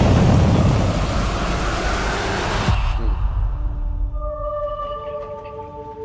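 Film trailer soundtrack: a loud explosion-and-fire effect, a dense rush of noise that cuts off abruptly about two and a half seconds in, then held, sustained music notes that build up one after another.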